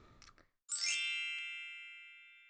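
A title-card chime sound effect: a single bright ding with a quick shimmering downward sweep at its start, sounding about two-thirds of a second in and ringing on as it slowly fades.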